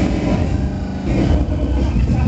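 Loud, bass-heavy jungle dance music played over an outdoor rave sound system, with voices over it.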